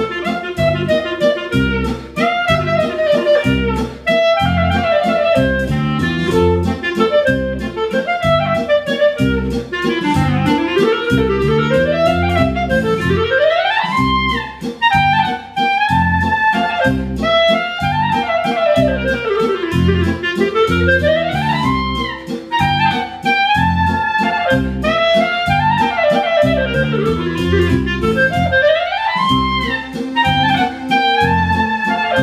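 Clarinet playing a waltz melody over an accompaniment with a steady low beat, with fast scale runs sweeping up and down in the middle of the passage.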